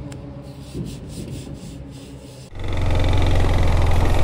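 Fingers rubbing a sticker flat onto a galvanized sheet-metal box in several short strokes, over a low steady hum. About two and a half seconds in, it cuts abruptly to a much louder, steady motorcycle engine running with wind noise.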